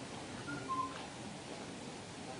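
A pause in speech: faint room tone, with a brief, faint high-pitched squeak about half a second in.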